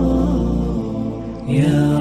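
Devotional vocal chant sung over a low held drone as background music. The drone drops out partway through, and a louder new sung phrase starts about a second and a half in.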